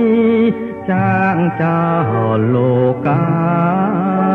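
Khmer golden-era pop song recording: a melody of long, wavering held notes that slide between pitches over steady accompaniment.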